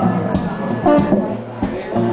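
Live acoustic music: guitar chords strummed in a steady rhythm during an instrumental passage.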